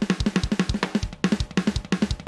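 Sampled acoustic drum kit in the Impact XT drum sampler, played live from controller pads: a quick, even run of kick and snare hits, about five or six a second.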